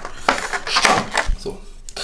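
A handful of short clinks and knocks as the aluminium parts of a headphone stand are picked up and handled on a tabletop.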